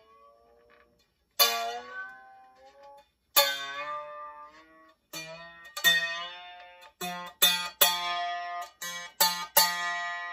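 A canjo's single steel guitar string, plucked over and over while its guitar tuner is tightened, so the tin-can instrument's twangy note glides upward as the string comes up to tension. The plucks come about two seconds apart at first and more quickly near the end.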